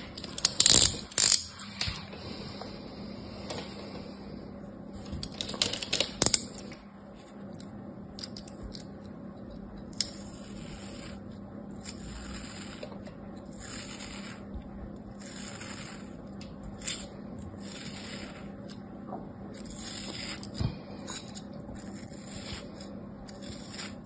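A craft knife blade slicing thin layers off a block of moulded kinetic sand held in the palm, each cut a soft gritty scrape, about one a second. In the first seven seconds, two short bursts of louder crackling handling noise.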